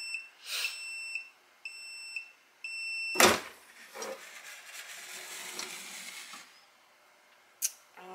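Heat press timer beeping three times as the 60-second press at 385 degrees ends: one long beep, then two short ones. About three seconds in, the auto-open platen pops up with a loud clunk, followed by a softer rushing noise and a sharp click near the end.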